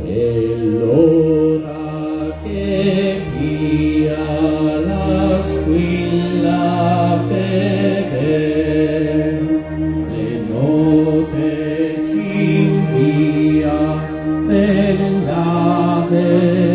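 A hymn sung by voices in slow phrases over long, steady accompanying chords.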